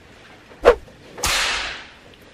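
Added whip-and-whoosh sound effects: a sharp whip-crack swish well under a second in, then a longer hissing whoosh that starts suddenly and fades out over about three-quarters of a second.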